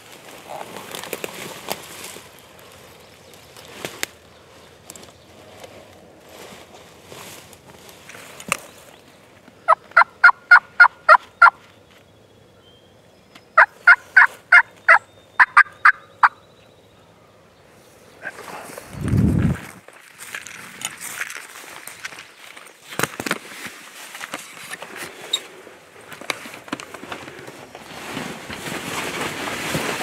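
Turkey yelping: two quick runs of about eight to nine evenly spaced yelps each, a couple of seconds apart, then a short low rumble.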